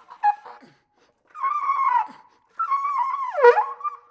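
Solo flugelhorn playing in a contemporary style: a few short, broken attacks, then two held, wavering high notes. The second note bends sharply down near the end and settles on a lower held tone.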